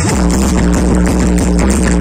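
Loud electronic dance music played through a truck-mounted DJ loudspeaker stack, with a heavy, steady bass that comes in right at the start.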